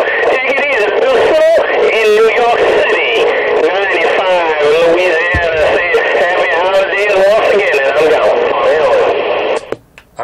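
Another station's voice coming over a CB radio's speaker on channel 19 (27.185 MHz), thin and narrow-sounding like radio audio, cutting off suddenly just before the end.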